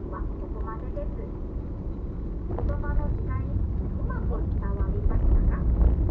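Car driving on a road, heard from inside the cabin: a steady low rumble of engine and tyres that grows louder toward the end, with faint, intermittent talk underneath.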